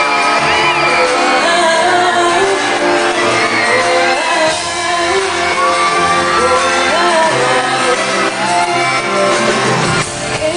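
A female pop singer singing live through a handheld microphone over an amplified backing band, echoing in a large arena, with the audience shouting and screaming along.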